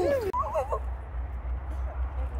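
A person's voice, then a short high wavering vocal sound in the first second, over a low steady rumble.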